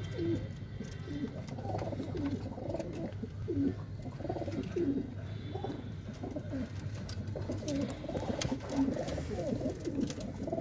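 A flock of domestic pigeons cooing together in a wooden loft, many low overlapping coos without a break, with a few faint light clicks among them.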